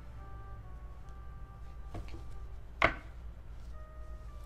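Soft background music with light taps from tarot cards being handled, and one sharp card snap nearly three seconds in.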